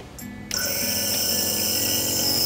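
Nebulizer air compressor switching on about half a second in, then running steadily: a hum of several even tones with a high hiss of the air driving the medication mist.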